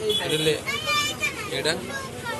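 Several people talking at once, with a high, child-like voice among them.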